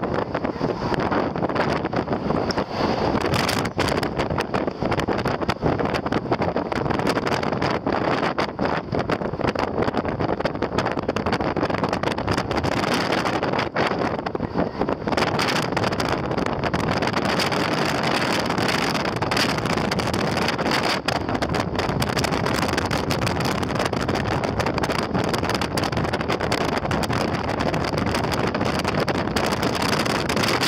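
Wind rushing over the microphone of a moving car, over the car's road and engine noise, with frequent brief gusts.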